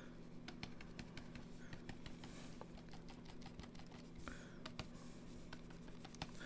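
Faint, irregular rapid clicks and taps of a stylus pen on a drawing tablet as short fur strokes are flicked in, over a steady low hum.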